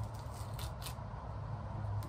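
Light handling sounds of hands on a dyed fabric print on a clipboard, with a few faint ticks as the paper decals are picked off the fabric, over a steady low hum.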